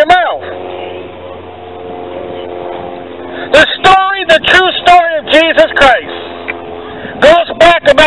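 A steady engine hum for the first three seconds or so, then a man's loud preaching voice in short, choppy phrases, with a pause near the end.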